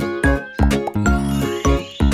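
Instrumental backing music of a children's song, with no singing.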